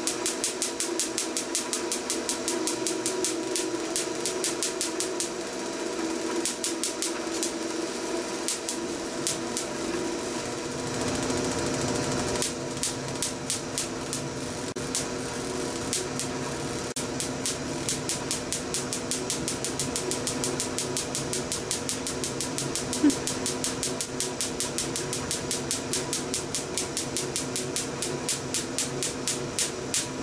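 Small static sparks snapping over and over from a Van de Graaff generator's stainless steel dome to a knuckle held close to it, several sharp clicks a second, over the steady hum of the generator's belt motor. The clicks thin out for a few seconds around the middle, then come back as fast as before.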